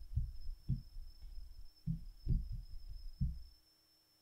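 A deck of tarot cards being tapped and squared on a wooden tabletop: a series of soft, dull thumps at uneven intervals that stop about three and a half seconds in.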